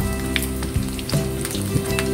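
Dried red chillies sizzling and crackling as they fry in hot oil in a frying pan, turned with a wooden spatula, with soft background music of held notes underneath.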